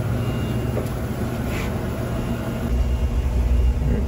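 A steady low mechanical hum with a faint rushing haze over it, growing louder and heavier about two-thirds of the way through.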